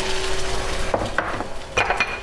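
Beaten eggs sizzling in a hot nonstick pan just after being poured in, with a few light clicks and knocks of handling about a second in and again near the end.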